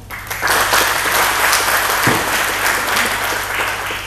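Audience of seated guests applauding. Many hands clap together, starting just after the beginning and dying away near the end.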